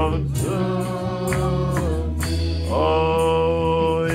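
A man singing a slow gospel song into a microphone, holding two long notes, over instrumental accompaniment with a steady low bass and a light regular beat.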